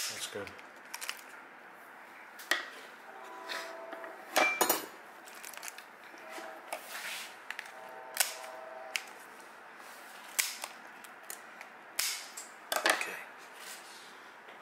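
Kitchen shears snipping through the hard shell of a giant isopod: a series of sharp cracking snips at irregular intervals, several louder ones near the end.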